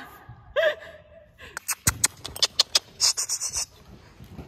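Two loose horses moving around an indoor sand arena. There is a short pitched sound about half a second in, then a quick run of sharp clicks and knocks for about two seconds, with a breathy hiss near the end.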